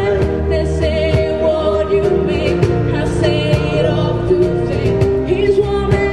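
Live acoustic band playing a song with singing: strummed acoustic guitars, electric bass and a cajón beating time.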